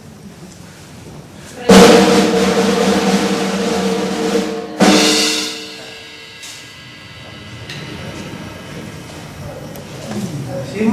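Drum roll on a drum kit for about three seconds, ending in a single loud hit that rings away: a suspense roll for a raffle draw.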